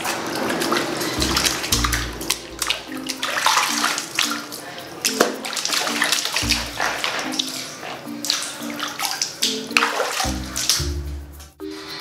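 Bare feet treading and splashing in a plastic basin of water, with irregular sloshes throughout. Background music with a short repeating melody and bass notes plays underneath.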